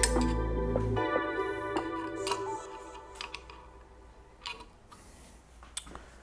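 Soft background music that fades out over the first few seconds, followed by a few faint, scattered clicks of small metal parts being handled.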